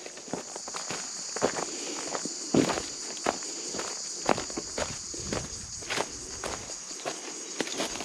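Footsteps crunching on dry leaf litter and bark, at an uneven walking pace, over a steady high-pitched drone of insects.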